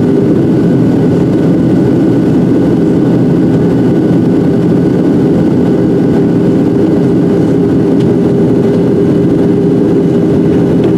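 Steady cabin roar of a Boeing 737-700 in flight, heard inside the cabin by the wing: the drone of its CFM56-7B turbofan engines mixed with airflow noise, with a few steady humming tones running through it.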